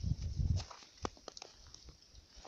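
Faint footsteps in snow, a low rumble in the first half second, then scattered soft crunches and clicks.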